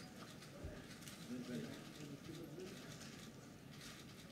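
Faint, indistinct murmur of low voices, with scattered short scratchy ticks and rustles over it.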